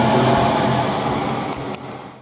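Steady machine hum with outdoor street noise, fading away over the last half second.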